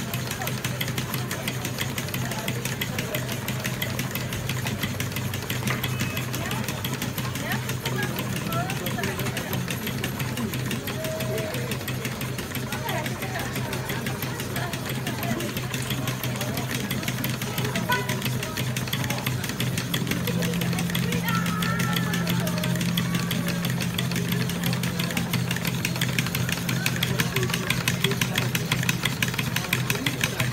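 Model stationary steam engines running on display, giving a rapid, steady clicking over a low hum. A second hum tone joins about two-thirds of the way through, with people chattering faintly behind.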